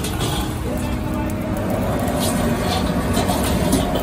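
Busy street-stall kitchen: a gas wok burner running under a loud, steady noise, with a metal ladle clinking and scraping in an iron wok and voices in the background.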